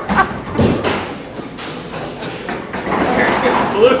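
Bowling ball crashing into the pins about half a second in, followed by a rattle of pins clattering and scattering across the pin deck. A voice comes in near the end.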